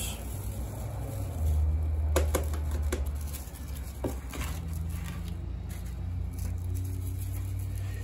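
Corned black powder grains poured into a wire-mesh strainer and shaken through it to sift off the dust, a low rustle with a few short sharp clicks between about two and four and a half seconds in.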